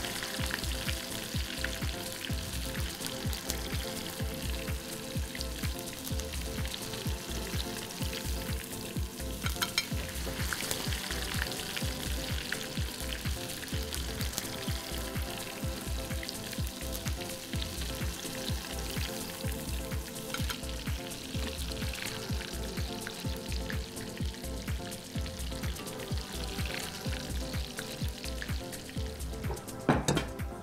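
Breaded meat cutlets deep-frying in a steel pot of hot oil: steady sizzling with dense crackling.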